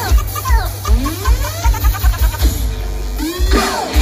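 Loud live electronic dance music over a festival PA: a steady kick drum at about three to four beats a second under sliding, swooping synth lines. About two and a half seconds in the beat drops out under a held bass note and a rising sweep, and near the end a different song with guitar begins.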